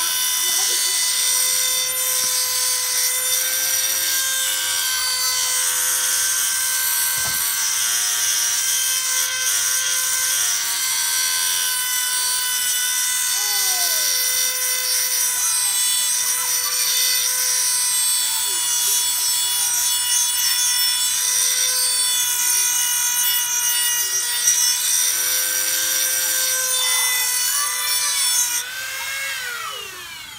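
Dremel rotary tool with a metal grinding wheel running at a steady high-pitched whine, with a grinding hiss as it sharpens the bevel of a steel lawnmower blade. Near the end the motor is switched off and its whine falls away as it spins down.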